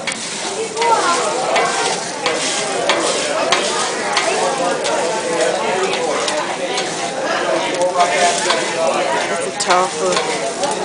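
Chopped zucchini sizzling on a hot steel teppanyaki griddle while a metal spatula scrapes and taps against the plate, with frequent sharp clicks as the pieces are chopped and pushed around.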